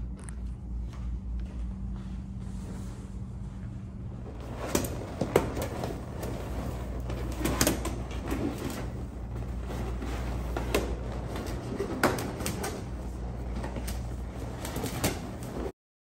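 Latex balloons being handled and fitted into a garland cluster: short rubbing squeaks and soft knocks over a steady low hum, starting about four seconds in. The sound cuts off just before the end.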